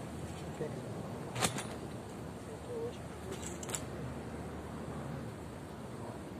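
Light handling of a wooden pole frame: one sharp click about a second and a half in and two lighter clicks past the halfway mark, over a steady outdoor hiss.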